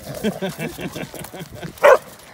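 A dog playing, giving a quick run of short pitched yips that rise and fall. A person laughs near the end.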